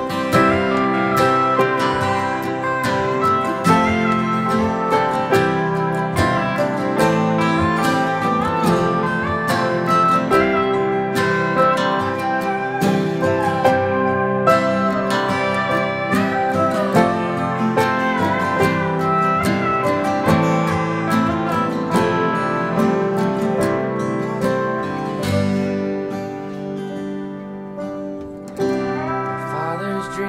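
Instrumental break of an acoustic country song played live by a small group: strummed and picked acoustic guitars with a lead line that slides and bends in pitch. The playing thins and quietens about five seconds before the end, then picks up again.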